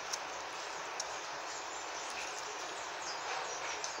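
Steady background hiss, with a couple of faint light clicks as artificial flower stems are handled at the vase.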